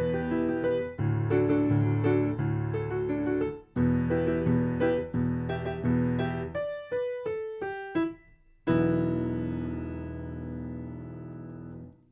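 Digital piano playing a sailor-song variation in E minor in cut time, with sustain pedal: repeated chords, a descending run of single notes about two-thirds of the way through, then a final held chord that rings and fades before stopping sharply at the end.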